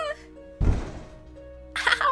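A single heavy thud about half a second in, a sound effect for a body falling to the floor, over soft background music.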